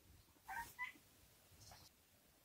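Near silence broken by two faint, short, high-pitched calls about half a second in, like a small animal's chirp.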